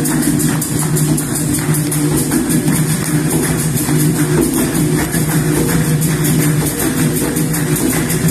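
Capoeira bateria playing: a pandeiro's jingles and skin struck in a fast, even rhythm over berimbaus and an atabaque drum.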